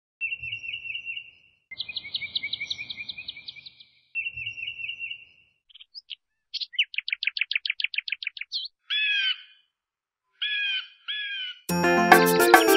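Birds singing: a run of separate trilled phrases and chirps, broken by short silent gaps. Music starts abruptly just before the end.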